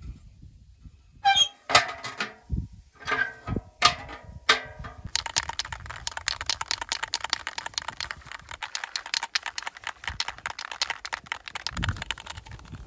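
Aerosol spray-paint can being shaken, its mixing ball rattling: a few separate metallic clacks, then from about five seconds in a fast, steady rattle.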